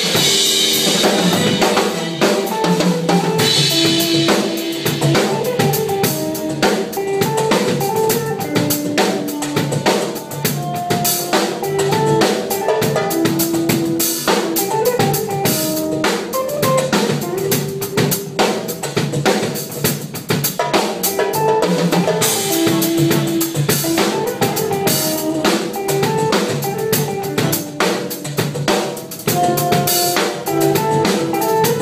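Odery drum kit played live in a steady groove over a backing track that carries a melody. Cymbals wash out at the start and again about 22 seconds in.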